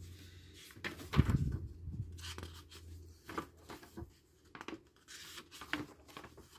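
Pages of a paper fanzine being turned and handled: a string of soft, irregular paper rustles, the loudest about a second in.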